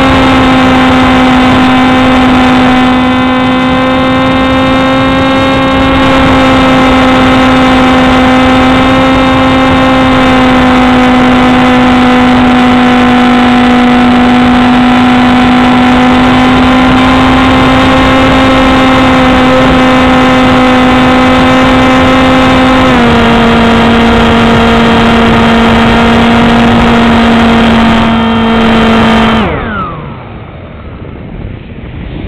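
The Mini Swift flying wing's motor and propeller, heard from its onboard camera, give a loud, steady whine in flight. The pitch drops a little about three-quarters of the way through as the throttle eases, and the motor cuts near the end, leaving wind rushing over the microphone.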